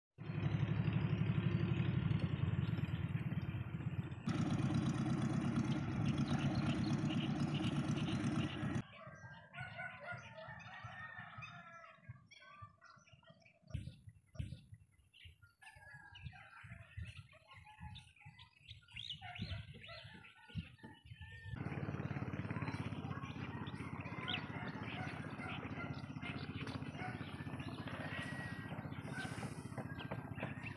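A steady low engine hum for the first third and again for the last third, with small birds chirping in the quieter middle stretch; the sound changes abruptly several times.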